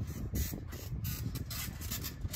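Soft footfalls and rustling on a trampoline mat over a low outdoor rumble.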